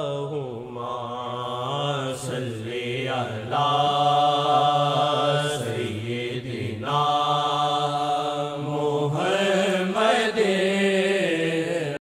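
A voice chanting a devotional chant in long, wavering held notes, with short breaks between phrases.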